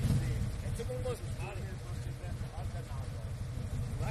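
A motor trike's engine idling steadily, a low even rumble, with faint voices over it.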